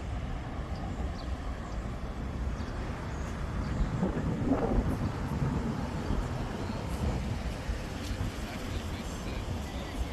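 Steady low rumble of city road traffic, with a brief voice about four seconds in.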